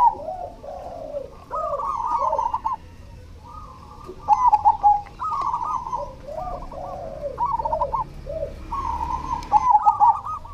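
A caged zebra dove (perkutut) sings its cooing song. It gives phrase after phrase of fast, trilling coos, each followed by a few lower, falling coos, with short pauses between phrases.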